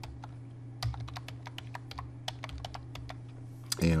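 Typing on a computer keyboard: a run of quick, separate key clicks lasting a couple of seconds, over a steady low hum.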